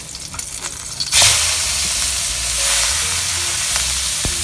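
A salmon steak frying in hot oil in a non-stick wok: a faint sizzle, then about a second in a sudden loud, steady sizzle as the fish meets the oil.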